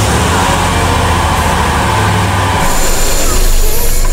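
A car driving up: engine rumble and road noise that grow slightly louder towards the end.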